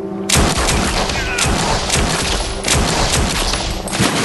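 A handgun fired in a rapid volley of gunshots, starting suddenly about a third of a second in and going on with the shots close together. A low held music drone sits under it.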